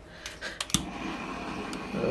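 A few sharp clicks, the loudest just before the one-second mark, then a steady faint hiss, typical of a hand-held butane torch being lit and burning.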